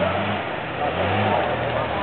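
Dodge Ram 2500 pickup's engine pulling through deep mud, revving up about half a second in and easing off again near the end.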